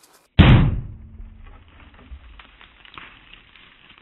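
A single .44 Magnum gunshot about half a second in, sharp and loud, its report dying away over about a second. It is the third shot at a twine-wrapped concrete panel, which the shooter takes for a clean pass-through.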